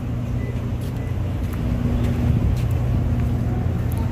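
Steady low mechanical hum with a faint constant tone above it, with a few faint ticks.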